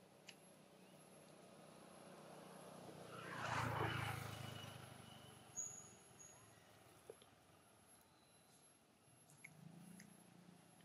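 A vehicle driving past on the road: a swell of road noise that builds for a couple of seconds, peaks a little under four seconds in and fades away. A single sharp click follows soon after.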